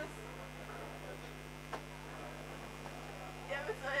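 Steady electrical mains hum, with a single sharp click a little before halfway.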